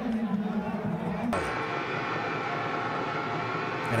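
Steady stadium background sound from a football game broadcast. A held low tone cuts off abruptly a little over a second in and gives way to an even, steady ambient hum.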